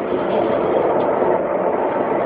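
A loud, steady rushing drone with no clear pitch, an unexplained noise in the night sky that goes on off and on for hours.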